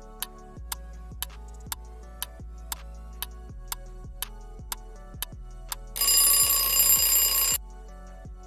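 Countdown-timer sound effect: a clock ticking about twice a second, then a loud alarm-clock ring lasting about a second and a half as the time for answering runs out.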